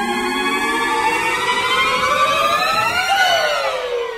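A siren-like pitched tone with several layered voices glides slowly upward, peaks about three seconds in, then bends down and begins to fade.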